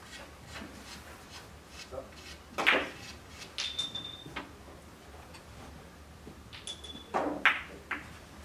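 Carom billiard balls and cue: a few short, sharp knocks and clicks as the cue tip strikes the cue ball and the balls touch on a short shot.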